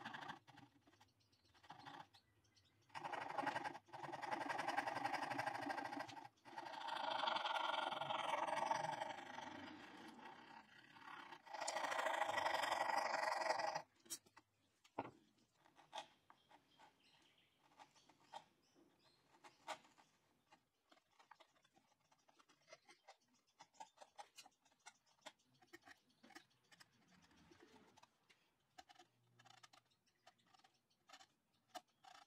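Hand saw cutting into a wooden box side held in a vice, in several runs of strokes a second or more long with short pauses. From about halfway on there are only faint, scattered clicks as a chisel pares out the waste of the recess.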